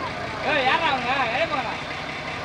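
Heavy dump truck's diesel engine running steadily as the truck moves slowly forward, with a voice over it.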